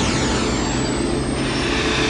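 Jet-like whoosh sound effect from a cinema logo soundtrack, with a thin high whistle that rises slowly in pitch, over a steady low drone.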